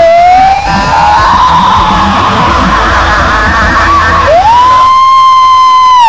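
Live rock band playing loud, with a lead electric guitar that slides up into a long held note about four seconds in.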